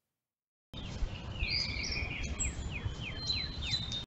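Wild birds singing, picked up by a trail camera's microphone. The sound cuts in about three-quarters of a second in. First comes a warbling phrase, then a rapid series of falling whistled notes, about three a second. Under it runs a steady low rumble.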